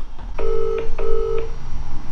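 Outgoing-call ringback tone playing through a mobile phone's loudspeaker: one British-style double ring, two short buzzing pulses in quick succession starting about half a second in. It means the called phone is ringing and has not yet been answered.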